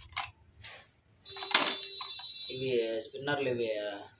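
A man speaking in short phrases, with a brief sharp sound about one and a half seconds in.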